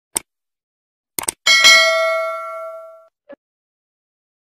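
A few sharp clicks, then a single bell-like ding that rings out and fades away over about a second and a half, with a short blip after it.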